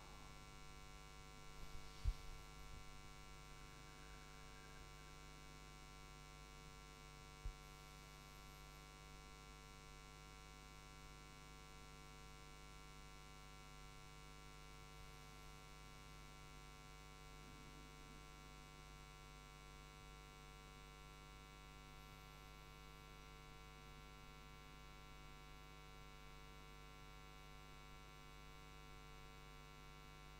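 Near silence with a steady electrical hum, broken by two brief knocks, a sharper one about two seconds in and a fainter one near seven seconds.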